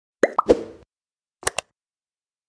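Intro sound effects for a logo animation: two quick rising blips, then a thump that rings briefly. About a second later come two sharp clicks in quick succession.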